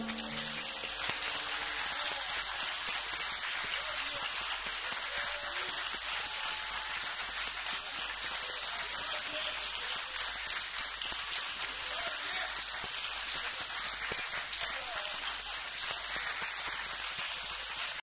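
The last chord of an acoustic guitar and piano piece fades out in the first second, and an audience's applause takes over and continues steadily.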